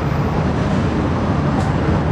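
Steady road traffic noise: a low engine rumble from vehicles passing on the street, with no distinct separate events.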